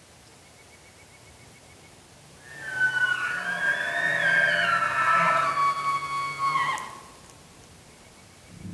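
Bull elk bugling: one long, high whistling call that slides up and then down, with a lower steady tone beneath it. It starts about a third of the way in and lasts about four seconds.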